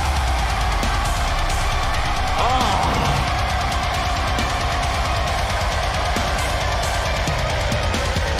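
Deathcore heavy metal song playing: distorted guitars, bass and drums kick in at full volume right at the start and play on densely and steadily.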